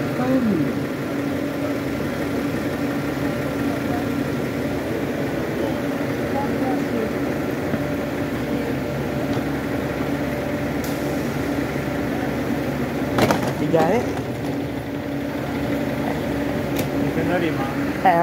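Transit bus idling at the curb, a steady low engine drone with a constant hum.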